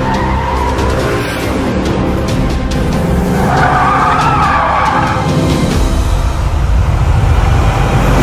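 Car tyres squealing as a red Ford Mustang drifts round a tight hairpin, the squeal loudest from about three to five and a half seconds in, over engine noise and a music soundtrack.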